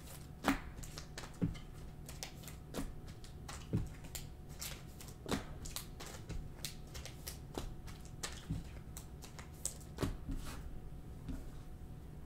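A stack of glossy trading cards being flipped through by hand, one card at a time, giving quiet irregular clicks and slides of card stock about once or twice a second.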